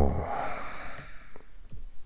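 A man's breathy exhale just after he stops talking, fading over about a second, followed by a few faint computer keyboard key clicks as he types.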